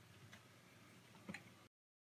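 Near silence with two faint clicks, about a third of a second in and just past the one-second mark, as an RC crawler wheel with a beadlock tool clamped on is handled; the sound cuts out completely near the end.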